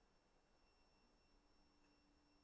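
Near silence: a pause in a screen-recorded narration with only a very faint steady electronic tone.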